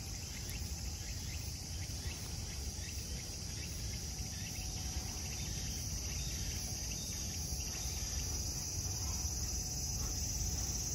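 A steady, high-pitched chorus of singing insects that swells slightly in the second half, over a low steady rumble.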